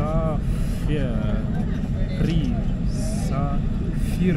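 Steady low rumble of an airliner cabin on the ground, with voices talking in the background.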